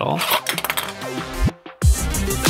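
Background electronic music: a rising sweep, a brief drop-out, then a steady beat kicking in near the end. A voice is heard at the start.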